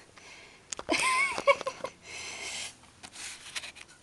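A woman's breathy laugh and exhale, with a light click just before it.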